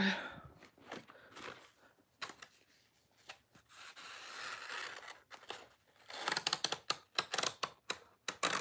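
Faint scratchy rubbing as a catnip banana toy is run along the fabric outside of an accordion cat bed. It comes and goes at first, then turns into a quick run of scratches in the last two seconds.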